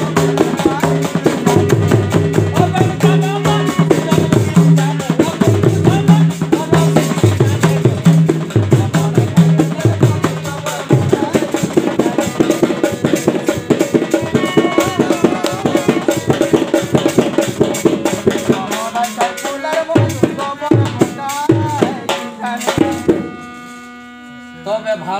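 Jhumur folk instrumental interlude: a harmonium sounds held, repeating notes over fast, steady hand-drum strokes. The playing thins out and quietens near the end.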